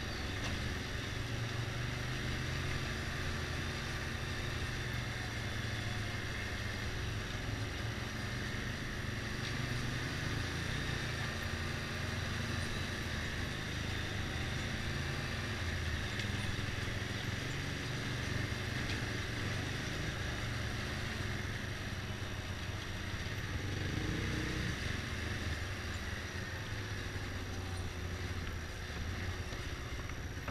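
Motorcycle engine running steadily while riding at low speed over cobblestones, with road and wind noise. The engine note changes briefly about 24 seconds in, and the sound eases slightly near the end as the bike slows.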